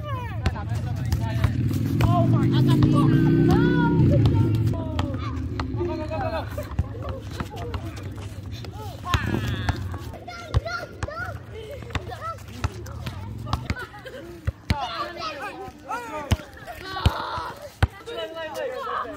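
Scattered voices of volleyball players calling out across an outdoor court. A vehicle passes early on: its engine rises in pitch and grows loudest around three to four seconds in, then drops away. Several sharp slaps of hands striking the volleyball follow later.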